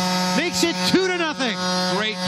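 A man's speaking voice, over a steady electrical buzz that runs throughout.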